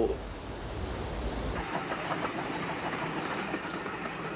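A steady rumble, like a moving vehicle, that gives way about a second and a half in to a thinner hiss with faint clicks.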